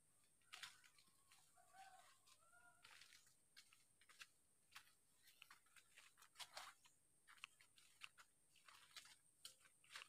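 Near silence, broken by scattered faint clicks and rustles, with a short run of faint animal calls about two seconds in.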